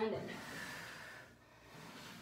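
A woman's audible breath in, lasting about a second, right after she says "in": a deep inhalation during a held lunge stretch.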